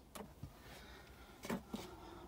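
Quiet room tone inside a small car cabin, with a faint click a fraction of a second in and a single short spoken word about one and a half seconds in.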